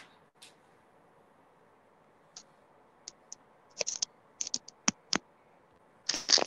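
Scattered clicks of computer keys being pressed. They fall in a loose flurry of about a dozen sharp clicks during the second half, after a few quiet seconds.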